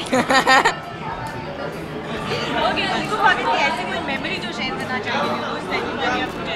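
Laughter with rapid pulses in the first second, followed by people chattering.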